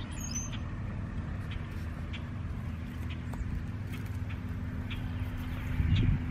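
A steady, low engine hum, with a brief high chirp just after the start and a few faint clicks or rustles.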